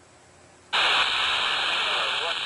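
Loud, steady static hiss from a Baofeng BF-F8+ handheld radio's speaker, which starts suddenly about two-thirds of a second in after near quiet. This is the radio listening for the weak downlink of the SO-50 amateur satellite, with nothing but noise coming through.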